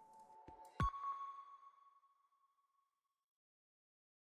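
Short electronic outro sound effect: a faint held tone, then a sharp hit about a second in with a clear ringing ping that fades away over about two seconds.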